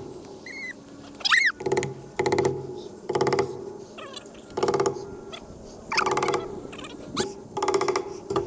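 A hammer driving fence staples over woven wire into a wooden fence post: about eight irregularly spaced strikes, each ringing briefly through the wire. A couple of short high chirps or squeaks come in the first second and a half.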